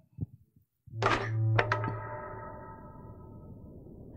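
A deep thud with a ringing musical chord, about a second in, fading away over about three seconds: the opening sting of a narrated Bible video.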